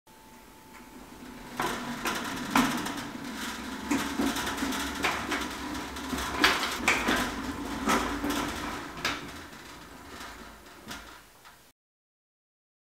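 Stainless steel lid and latch clamps of an SS Brewtech conical fermenter being handled: a run of irregular metal clicks and knocks that cuts off suddenly near the end.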